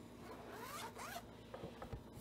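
A zipper being pulled open around a book cover, a rasping run of about half a second, followed by a couple of soft knocks as the book is handled on the lectern.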